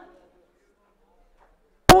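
A man's speech into a microphone breaks off and fades into near silence for over a second, then resumes near the end with a sharp pop on the microphone as he starts a word beginning with 'p'.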